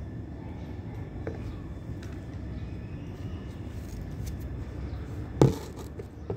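Steady low background rumble, with a few faint ticks and one sharp knock about five seconds in.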